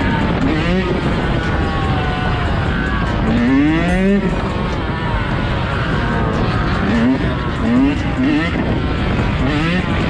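Yamaha dirt bike engine revving hard while wheelieing, its pitch climbing again and again with each blip of the throttle: one long climb just before the middle, then several quicker ones later. Other motorcycles run alongside.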